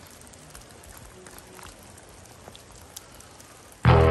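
Light rain in a forest: a steady, even hiss with a few scattered drips. Just before the end, loud music with a heavy drum beat cuts in.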